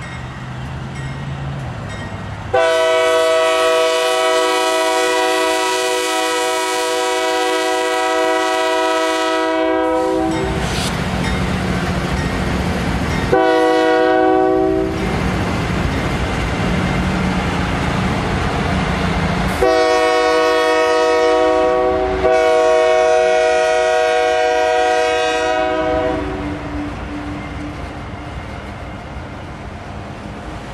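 Union Pacific diesel locomotive's multi-chime air horn blowing four blasts as the train passes: a long one of about eight seconds, a short one, then two long ones close together. Between and after the blasts, the rumble of the locomotives and autorack cars rolling past on the rails.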